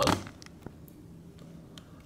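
Quiet room tone with a couple of faint clicks from hands taking hold of a closed antique singing bird box; the bird and its song have not started. A man's voice trails off right at the start.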